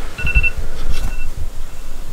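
A phone alarm beeping: one short beep just after the start, then only faint traces of it as it stops. Under it are low, uneven bumps of the phone being handled close to the microphone.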